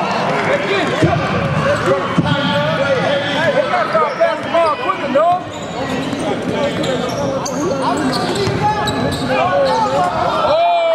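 A basketball bouncing on a hardwood court during live play, with several players and spectators shouting and talking over it in a large indoor arena.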